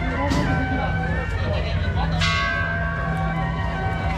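Procession percussion: struck metal rings out about every two seconds, each hit leaving a long, many-toned ring. Voices and a steady low rumble run underneath.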